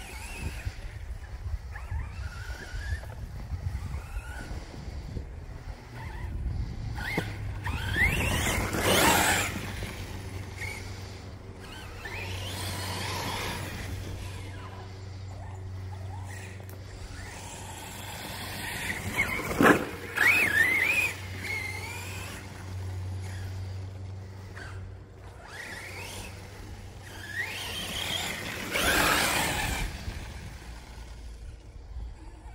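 Brushless motor of an Arrma Notorious RC truck (Spektrum Firma 4074 2050Kv on 6S) whining as the truck accelerates in bursts across grass, its pitch rising with each run. There are three loud runs, about 9, 20 and 29 seconds in, with a sharp knock near the middle one.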